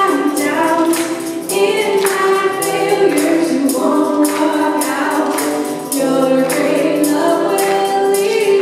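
Live church praise band music: women's voices singing together over guitar, with a steady percussive beat of about two strikes a second.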